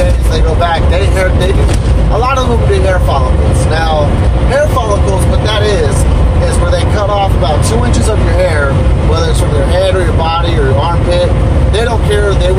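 A man talking over the steady low rumble of engine and road noise inside a moving truck's cab.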